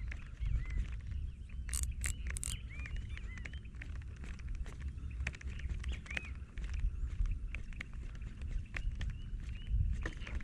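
Short chirping animal calls repeating irregularly, about once or twice a second, over a low steady rumble, with a few sharp clicks about two seconds in.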